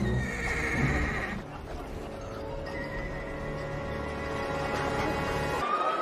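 A horse whinnies with a quavering call over the first second or so. Film score with long held notes plays under it and carries on afterwards.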